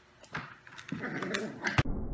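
Five-week-old pit bull puppies play-wrestling on blankets, with scuffling, light knocks and small puppy vocal sounds building up about a second in. A sharp knock comes near the end, then the sound cuts off abruptly.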